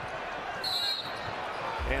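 Basketball arena crowd noise during an NBA game, with a short high-pitched squeal about half a second in.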